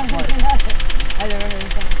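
Nissan Maxima 3.5-litre V6 (VQ35DE) idling with a rapid, even ticking rattle from the engine. One of the people at the car thinks the oil probably drained out of the timing chain tensioner while the car sat for several days.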